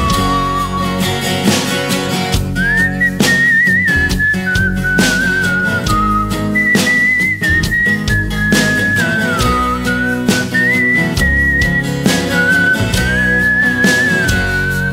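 A whistled melody over guitar accompaniment, a single clear tune stepping up and down in pitch.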